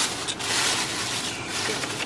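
Thin plastic grocery bags rustling and crinkling as a hand rummages through them.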